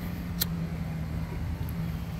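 Steady low hum and rumble of a nearby motor vehicle engine, with a single sharp click about half a second in.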